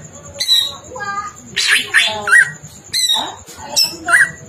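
Caged cucak ijo (green leafbird) singing a loud, varied song of quick chattering notes, whistled glides and harsh buzzy phrases, with short pauses between them. The song is full of mimicked phrases taken from other birds.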